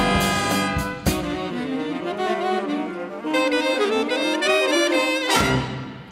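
Student jazz big band playing, saxophones, trumpets and trombones together: sustained horn chords with two sharp hits about a second in, then a moving horn line. A loud final accented chord near the end rings off and fades.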